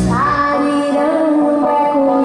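Live band music with a woman singing held notes that slide up at the start, over a thinned-out accompaniment with the drums and bass dropped out.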